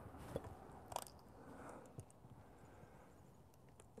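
Near silence broken by a few faint, soft squelches and clicks, about half a second, one second and two seconds in, from a plastic ketchup squeeze bottle being squeezed.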